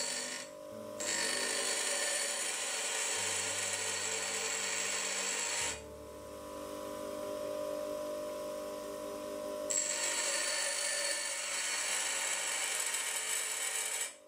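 Bench grinder wheel grinding a high-speed steel twist drill held in a tool holder, forming the cutting faces of an internal groove lathe tool. The grind comes in two stretches, with the wheel spinning free and quieter for about four seconds in between.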